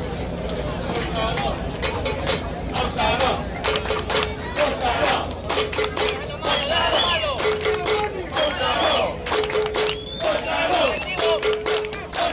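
Softball spectators shouting and cheering, with many sharp claps or bangs. From about four seconds in, a short held tone sounds about every two seconds.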